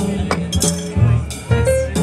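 Small live jazz band playing: reed horns, piano, walking double bass and drum kit, with bright cymbal strokes cutting through several times.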